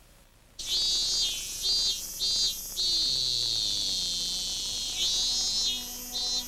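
High-pitched chirping tones in short bursts after a brief quiet gap, then one long note that slowly falls in pitch, then more short chirps.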